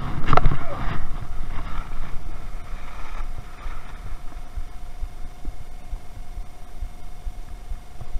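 Skis scraping and knocking on the hard snow of the unloading ramp as the skier gets off a chairlift, loudest in the first second, then a steady rumble of skis sliding on packed snow with wind on the chest-mounted camera's microphone.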